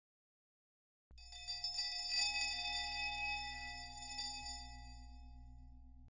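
A bell-like chime sounding about a second in, ringing with several steady high tones over a low hum and slowly fading away.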